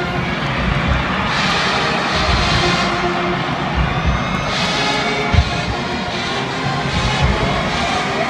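Music playing under the steady roar of a football team and stadium crowd shouting, swelling louder twice.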